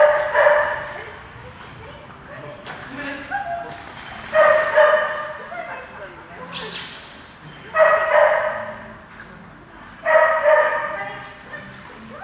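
A dog barking in high, yelping bursts of two or three quick barks, repeated four times about every three seconds.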